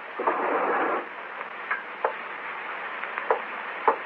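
Radio-drama sound effects of small household handling: a noisy rush of sound lasting most of a second just after the start, then a few light clicks and knocks spaced about a second apart.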